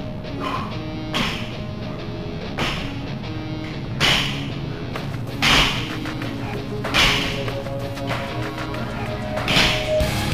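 Rock music playing, with a sharp stroke about every second and a half from barbell sumo deadlift high-pull reps: the bar and plates meeting the mat, or the lifter's forced breath on each pull.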